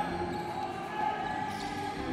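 A basketball being dribbled on a wooden court, with the steady background noise of an indoor arena.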